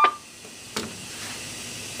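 Steady hiss from a handheld two-way radio's speaker feeding a simplex repeater, with the receive volume turned all the way up. A short electronic tone and a sharp burst sit right at the start, and a brief click comes about three-quarters of a second in.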